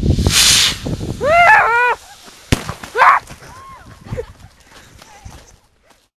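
New Year's rockets on a homemade crate car igniting with a short loud hiss, followed by a single sharp bang about two and a half seconds in: a failed launch. Excited voices call out between them.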